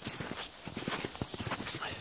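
Footsteps crunching through snow: a run of many quick, irregular steps, from the German Shepherd trotting and the person following him.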